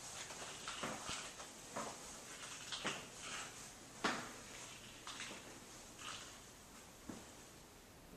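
Soft footsteps on a tiled bathroom floor, roughly one a second, with a sharper knock about four seconds in.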